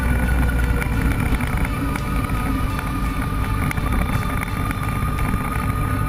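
Motorcycle engine running on the move, with wind noise on the microphone.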